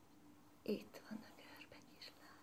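A woman's soft, half-whispered voice: a short utterance a little under a second in and another brief one just after, over a faint steady hum.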